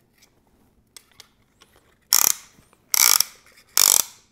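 Ratchet wrench clicking as it tightens the screw of a band-type piston ring compressor clamped around a piston, squeezing the new piston rings into their grooves. It comes in three short runs of clicks about a second apart in the second half, after a couple of nearly quiet seconds with a few faint handling clicks.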